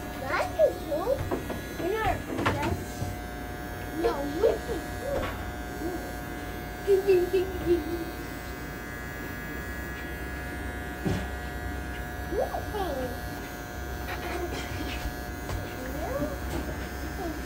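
Barber's electric hair clippers running with a steady buzz while trimming a young child's short hair.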